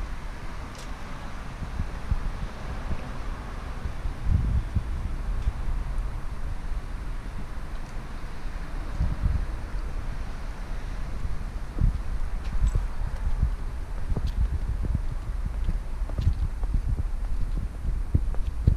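Wind buffeting the camera microphone in irregular low rumbles over a steady hiss, with a few faint knocks.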